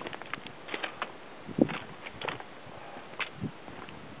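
Irregular crunches and clicks of boots and hands moving over loose, broken rock while scrambling, with a couple of heavier thuds.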